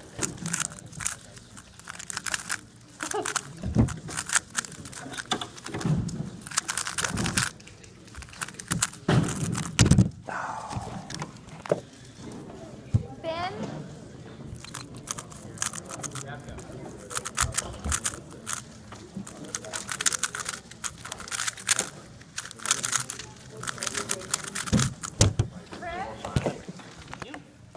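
Rapid, dense plastic clicking of a Moyu GTS v2 3x3 speedcube being turned fast through a solve, thickest in the second half, over voices talking in the background.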